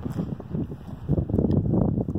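Wind buffeting the microphone: an uneven rumble that swells in the second half.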